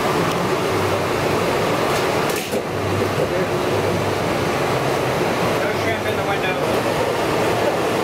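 Indistinct background voices at a busy outdoor food counter over a steady hum of fans and kitchen equipment.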